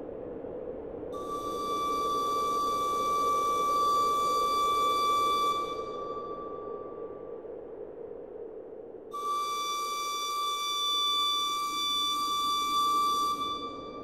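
A flute playing two long, steady high notes of about five seconds each, the second starting about nine seconds in, each fading away at its end over a low steady hum.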